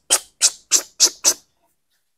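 A man imitating a fuel injector's spray with his mouth: five short, sharp 'tss' hisses, about three a second, standing for the injector squirting fuel in pulses.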